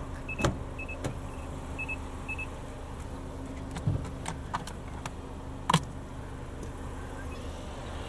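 The Mazda CX-30's electronic chime beeping in short high pips about every half second for the first couple of seconds, followed by scattered sharp clicks of door and interior latches and a dull knock, the loudest click a little before six seconds in. A steady low hum runs underneath.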